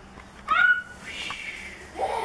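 Toddler's short high-pitched squeal about half a second in, rising then falling in pitch, followed by a softer second call.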